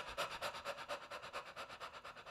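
A man panting quickly through an open mouth, short in-and-out breaths at an even pace of several a second: a singer's warm-up exercise to work the diaphragm.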